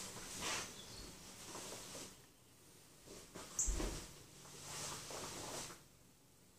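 Karate gi rustling and swishing as a person steps and throws a strike, with bare feet moving on a wooden floor. A soft thump comes about three and a half seconds in.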